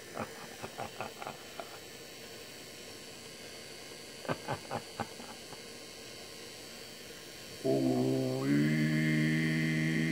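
A low voice chanting one long, steady held note, starting near the end, after a few short soft sounds.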